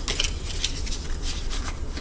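Tarot cards being shuffled and handled: light rustling with scattered small clicks.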